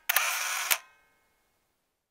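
Camera shutter sound effect: quick sharp clicks, then a short whirring burst under a second long that ends in a click.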